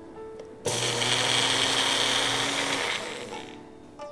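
Magic Bullet blender motor grinding toasted sesame seeds. It starts about a second in, runs steadily for about two seconds and then winds down, leaving the seeds about half-ground.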